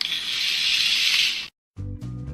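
A loud, hissing rattle-like noise for about a second and a half that cuts off suddenly, then after a brief gap, background music with a steady bass line and beat begins.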